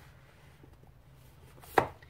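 Books being handled on a shelf: a few faint light taps, then one sharp knock near the end as a book is pulled out and knocks against the shelf or the neighbouring books.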